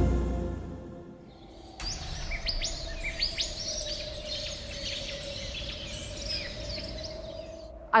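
Music fading out, then birds chirping and calling from about two seconds in, many quick rising chirps over a steady held tone.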